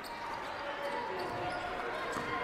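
A basketball being dribbled on a hardwood gym floor, with the steady background hubbub of the gym.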